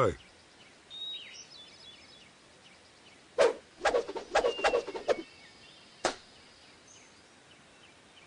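Quiet outdoor film ambience with a few faint bird chirps, a cluster of short knocks and rustles about three and a half to five seconds in, and a single sharp click just after six seconds.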